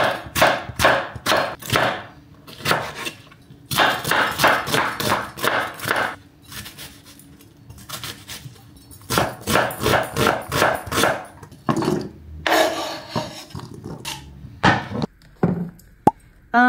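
Chef's knife chopping tomatoes and onion on a wooden cutting board: runs of quick knife strikes, about four a second, with short pauses between runs.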